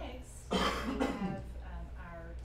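A person coughs once to clear their throat: one loud, rough burst about half a second in, lasting under a second.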